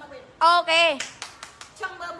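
A woman's loud, high two-syllable exclamation, followed at once by a quick run of about six sharp hand claps.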